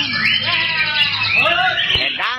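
Caged songbirds chirping and whistling in quick rising and falling notes, over a steady low hum that fades out about one and a half seconds in.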